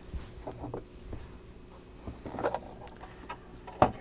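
A clear plastic display case being opened by hand to take out a diecast model car: soft plastic rubs and small taps, with a sharp click near the end.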